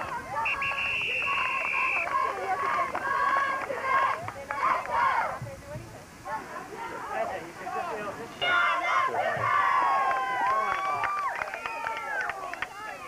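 Many voices overlapping at once, players and spectators talking and calling out at a football game. About half a second in, a referee's whistle gives one steady blast of a bit over a second.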